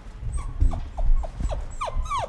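Puppy whining: a quick run of short, high, falling whimpers that grow louder and longer near the end.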